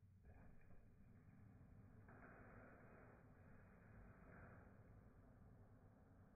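Near silence: a faint steady hiss of water flowing through the plumbing and spin-down sediment filter. It sets in just after the start and grows stronger about two seconds in.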